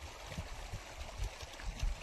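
Water running steadily down a small stone-lined irrigation channel into flooded field furrows.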